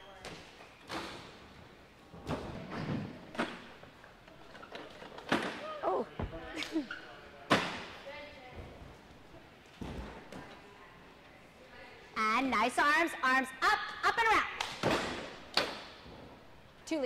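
Gymnasts' feet and hands thudding onto balance beams as they land aerials and leaps, one sharp landing every second or two, the loudest about seven and a half seconds in. Voices talk over the last few seconds.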